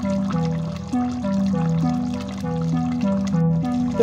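Background instrumental music: a simple melody of held notes stepping over a steady low accompaniment.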